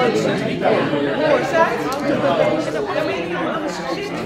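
Many people talking at once: overlapping conversations of a seated group split into small discussions, a steady hubbub of voices with no single speaker standing out.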